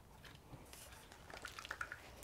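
Faint handling noise: light clicks and rustling of wiring-harness cables and plastic connectors against the back of a car stereo head unit, with a few small ticks in the second half as the plastic unit is picked up.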